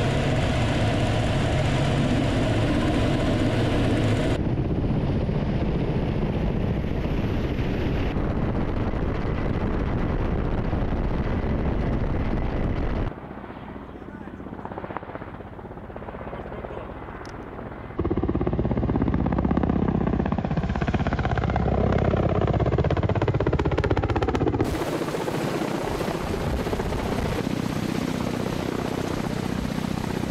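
Ka-52 attack helicopter's coaxial rotors and twin turboshaft engines running in flight. It is heard first from inside the cockpit, then from outside as the helicopter flies in the sky and passes low. The sound changes abruptly at several cuts, with a quieter stretch in the middle.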